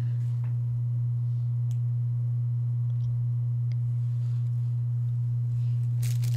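A steady low hum, one unchanging tone, with a couple of faint ticks over it.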